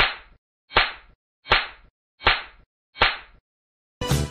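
Film-leader countdown sound effect: five sharp hits in an even rhythm, about one every three-quarters of a second, each dying away quickly.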